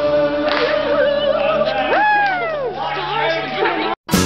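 A group of voices singing, a note held underneath while one voice slides up and back down about halfway through; it cuts off suddenly at the end.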